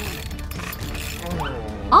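A rapid run of mechanical ratcheting clicks, over a low steady music bed.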